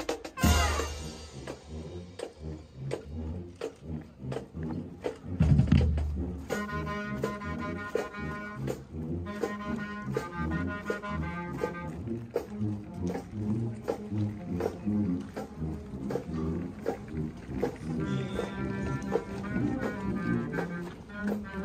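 Marching band playing: brass and woodwinds over a steady drum beat, with high winds such as flutes carrying the tune from about six seconds in. A brief loud low boom sounds just before that.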